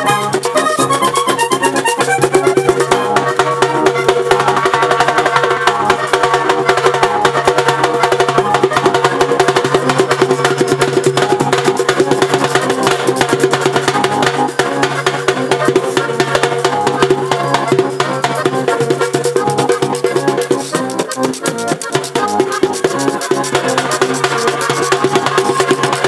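Live vallenato puya: a diatonic button accordion playing steady sustained notes over a fast, driving hand-drum rhythm beaten on a caja vallenata.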